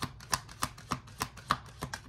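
Tarot deck being shuffled by hand, the cards snapping together in a steady run of sharp clicks, about three a second.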